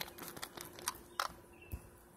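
A few light, irregular taps and clicks of a small plastic toy figure hopped along a concrete curb.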